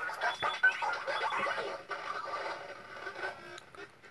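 Circuit-bent Playskool musical toy playing through its small speaker: its built-in tunes pitch-bent and chopped by looping oscillators and a decade-counter sequencer, a warbling, stuttering jumble of electronic tones that fades down near the end. The speaker calls it a weird nightmare soundtrack.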